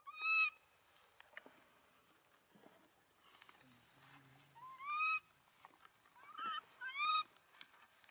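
Infant long-tailed macaque crying with short, high, rising calls: one right at the start, one about five seconds in, then three quicker ones near the end.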